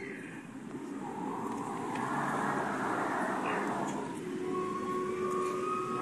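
A passing road vehicle, its noise swelling to a peak about halfway through and then easing off, with a faint steady hum near the end.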